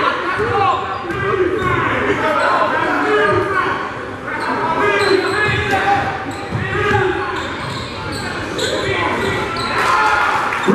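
A basketball dribbled on a hardwood gym floor, with many voices of players and spectators calling out throughout, echoing in a large gym.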